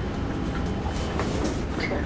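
Large sheets of drawing paper rustling as they are laid down and lifted, with a few short crinkles over a steady low rumble of room noise.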